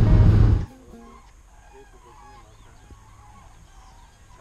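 Loud road noise from inside a moving car cuts off abruptly under a second in. A flock of migrating birds then calls overhead, many short calls overlapping.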